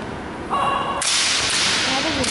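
Kendo fighters shouting kiai: a pitched shout about half a second in, then a sharp crack and a louder, harsh, drawn-out shout about a second in as one fighter lunges to strike with the bamboo shinai.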